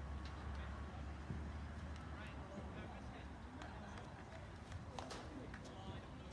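Low rumble of wind on the microphone, with indistinct distant voices from across the football pitch and a few short sharp knocks, the loudest about five seconds in.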